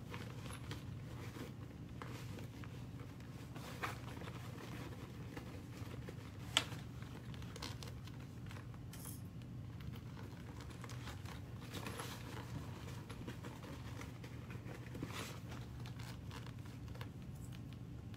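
Faint hand-handling of a vinyl and fabric handbag piece held with sewing clips: soft rustling and a few small clicks, the sharpest about six and a half seconds in, over a steady low hum.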